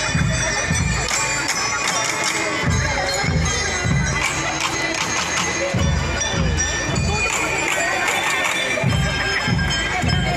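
Drum and lyre band playing: clusters of bass drum beats with snare drums and high, ringing bell-lyre notes, over crowd noise.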